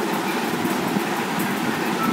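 Steady, even rushing background noise with no distinct events.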